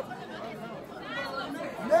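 Faint, indistinct background chatter of several people talking at once.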